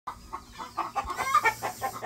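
Small flock of young chickens clucking and cheeping in a quick run of short calls that gets busier and louder about a second in.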